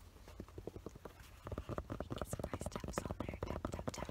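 Fingertips tapping and scratching fast on a black fabric baseball cap. The taps are scattered at first and become a rapid, even run of about ten a second from about a second and a half in.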